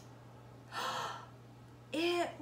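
A woman gasps once, a short breathy intake of surprise, about halfway through, over a faint steady low hum.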